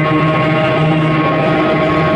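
Live rock band playing loud, sustained held chords with no singing.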